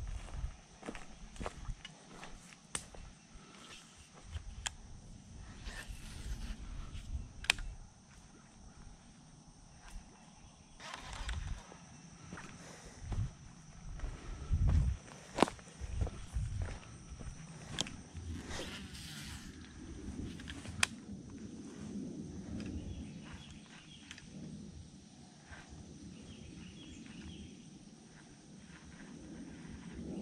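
Footsteps through grass and handling noise as an angler works a baitcasting rod and reel along a pond bank, with scattered sharp clicks and a few low knocks. A steady high-pitched hum runs underneath.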